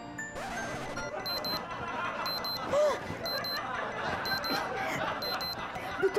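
Digital alarm clock beeping in short bursts that repeat about once a second, starting about a second in, over background music. A short, loud vocal sound comes about three seconds in.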